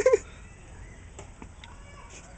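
A person's short, high vocal sound, rising then falling in pitch, right at the start, then low background with a few faint clicks about a second in.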